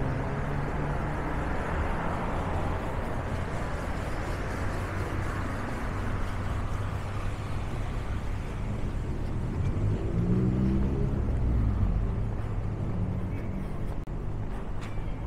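City street traffic: motor vehicles running past in a steady wash of engine and tyre noise. One vehicle grows louder about ten seconds in as it passes close.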